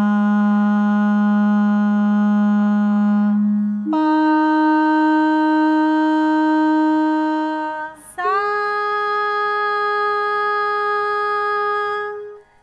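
A woman singing the Carnatic swaras Sa, Pa and upper Sa (the ascending Sa-Pa-Sa warm-up), each held about four seconds as one steady, unwavering note. The notes step up a fifth to Pa, then up to the octave Sa, which she slides into slightly at its start.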